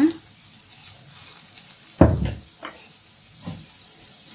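Onions frying softly in a stainless steel pan, with a few light clicks of a metal spoon and one heavy thump about halfway through.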